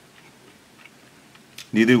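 Faint, crisp clicks of a mouth chewing fried chicken, then a man starts talking loudly near the end.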